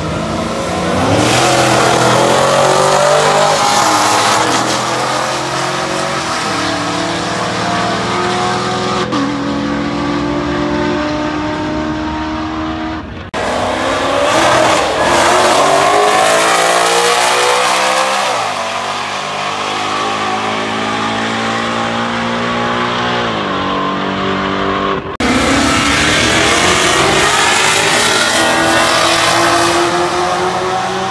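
Street cars racing side by side from a rolling start, their engines revving hard and climbing in pitch through several gear changes. The sound breaks off abruptly twice, each time starting again on a new run.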